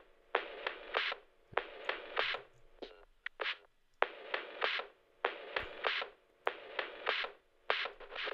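Sampled drum loop played back through a lo-fi EQ: thin, telephone-like percussion hits in a quick repeating pattern, several a second, with no bass. The loop has been edited, with parts taken out.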